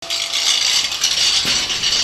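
Angle grinder grinding rusty steel: a steady, harsh grinding noise with no clear pitch, and one brief click about one and a half seconds in.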